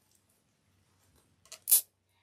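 A plastic zip tie pulled quickly through its catch: two short zips near the end, the second one loud.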